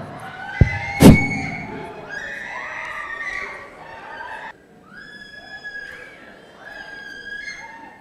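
A loud thump about a second in, then a crowd of people crying out and wailing with wavering voices. After a cut about four and a half seconds in, it turns quieter, with long, steady held notes.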